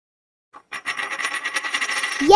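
Coin-toss sound effect: a metal coin spinning and rattling in a fast run of ringing clicks, starting about half a second in after silence.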